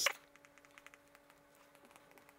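Faint, quick irregular taps and scratches of a stylus writing on a tablet screen, over a faint steady hum.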